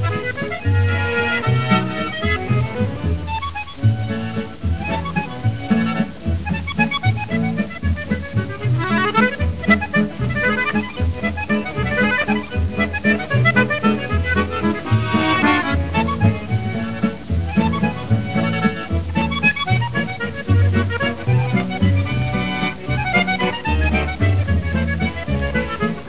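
Musette jazz from a 1939 78 rpm recording: button accordion leading with fast runs that sweep up and down, over guitar and double bass accompaniment with a steady pulsing bass line.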